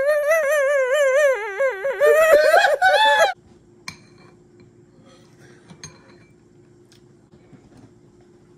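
A woman's high, wavering wail of laughter she is trying to hold in, cut off suddenly about three seconds in. Then a faint steady hum, with a few light clinks of dishes and cutlery.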